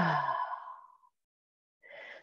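A person's long, audible sighing exhale: a voiced sigh that falls in pitch and trails off into breath by about a second in. A faint breath in comes near the end.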